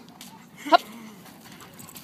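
Mostly speech: a short, sharp spoken dog command, 'hop', about three-quarters of a second in, with only faint background noise otherwise.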